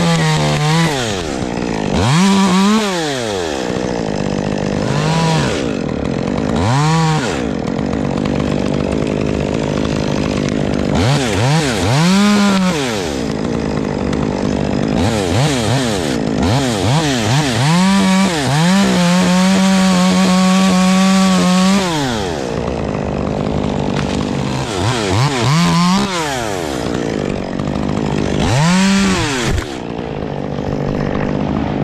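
A climber's top-handle chainsaw cutting into a pine stem. It is blipped up to speed and dropped back to idle about eight times, with one held full-throttle cut of about three seconds about two-thirds of the way through.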